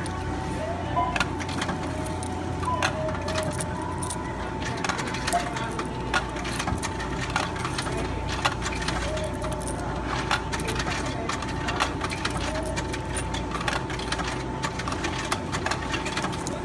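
Loose coins clicking and clinking, many small strikes one after another, as they are counted out of a hand and fed in to pay at a store checkout, over a steady thin electrical tone and low hum.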